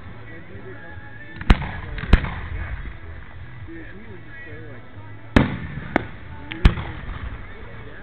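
Aerial fireworks shells bursting: five sharp bangs, two close together about a second and a half in and three more between about five and seven seconds in, each followed by a brief echo.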